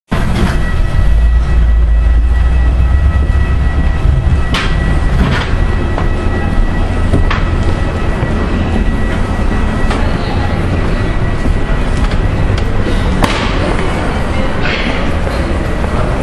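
Rumble and clatter of walking through an airport jet bridge into the terminal, heaviest in the first few seconds, with a faint steady high whine and scattered knocks.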